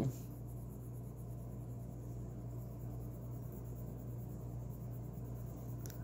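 Faint scratching of a colored pencil shading on paper, over a steady low hum.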